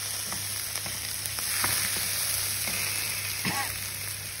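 Diced onion, carrot and potato sizzling steadily in a stainless steel frying pan on high heat as they brown and caramelise, with a wooden spoon stirring and scraping, giving scattered light clicks against the pan.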